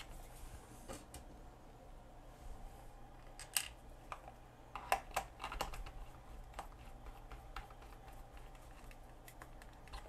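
Screwdriver turning small screws into a plastic alarm clock case: faint, irregular clicks and ticks of the bit and the plastic housing.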